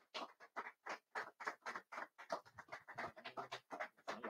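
Faint, sparse applause from a small audience: scattered individual hand claps, several a second, irregular and unsynchronised.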